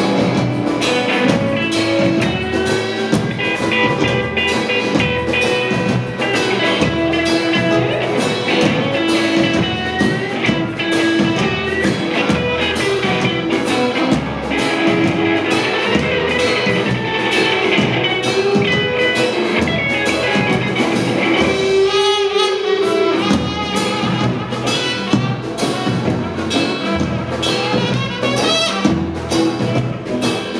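Live band playing a bluesy rock-and-roll number: electric guitars, slapped upright double bass and drum kit keeping a steady beat, with brass coming in near the end. The bass and drums drop out briefly about three-quarters of the way through.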